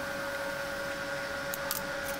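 TIG welding machine humming steadily with a hiss, its arc off between passes, with a couple of faint ticks near the end.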